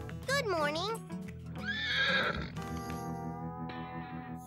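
A horse whinnying twice: a quavering whinny just after the start and a second, arching one around two seconds in, over background music.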